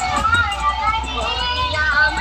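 Loud music from a DJ sound system: a high sung vocal line over a continuous heavy bass.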